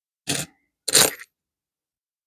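Two short clatters of pennies being handled and set down, the second louder and ending in a brief high ring.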